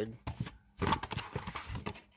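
Crinkly rustling of foil trading-card packs being handled and set down, with small clicks, for about a second and a half.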